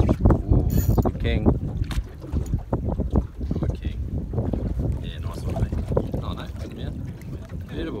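Wind buffeting the microphone over water sloshing against the side of a boat, with faint voices now and then.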